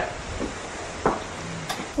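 Wind rumbling on the microphone, with a couple of small sharp clicks.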